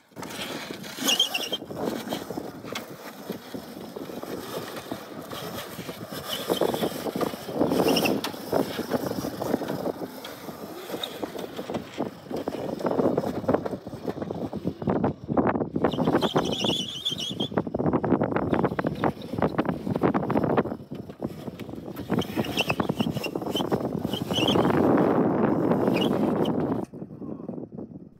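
Upgraded 72-volt Razor Crazy Cart XL drifting on concrete: tyres scrubbing in uneven surges, with a few short high chirps. The sound drops away just before the end.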